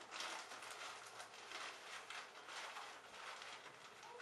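Faint, irregular rustling and crinkling of a shower cap being pulled and adjusted over a plastic bag on the head.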